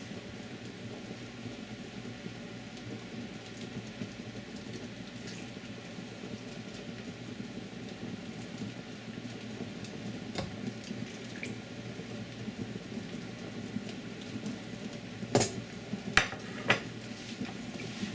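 A black ladle scooping soup from a pot into a ceramic bowl: soft liquid sloshing and pouring with light ladle scrapes, over a steady low hum. A few sharp clinks and knocks of ladle and dishes come near the end.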